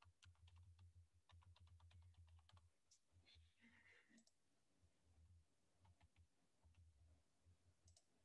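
Very faint computer keyboard typing for the first two or three seconds, then a few scattered faint clicks; otherwise near silence.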